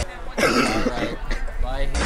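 A person's voice making short non-word sounds, cough-like, loudest about half a second in.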